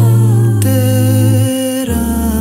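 Mixed six-voice a cappella ensemble singing close-harmony gospel chords with a strong bass note. The voices enter together right at the start after a short rest and hold the chord, which shifts about half a second in and again near the end.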